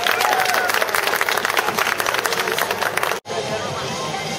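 Audience applauding, dense clapping with a few voices, as a gymnast salutes at the end of a floor routine. It cuts off abruptly a little over three seconds in, giving way to crowd chatter.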